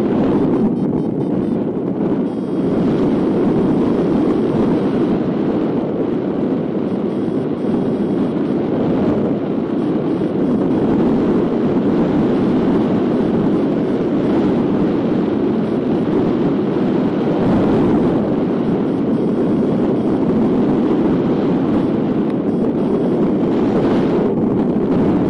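Steady rush of airflow buffeting the microphone of a camera mounted on a hang glider in flight at about 42 km/h airspeed, an even, unbroken roar with no pauses.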